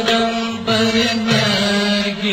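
Background vocal music in a chant-like style: a voice holding long, steady sung notes.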